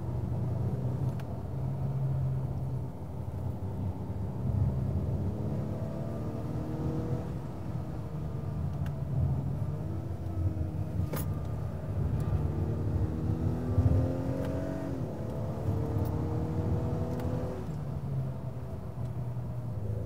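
2021 Acura TLX A-Spec's 2.0-litre turbocharged four-cylinder engine pulling on the road over tyre and road noise, its pitch climbing several times and dropping back as it shifts, most clearly about fifteen seconds in. A single sharp click about eleven seconds in.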